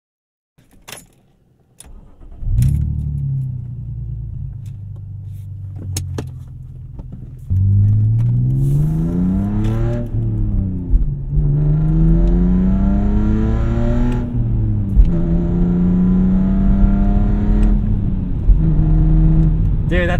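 BMW E46 330xi inline-six with eBay headers and a muffler delete. After a few clicks it fires up about two seconds in and idles, then is driven hard through the gears: the engine note climbs in pitch and drops back at each shift, three times.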